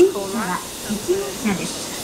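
Quiet speech that the recogniser did not pick up, over a steady hiss of railway station background noise.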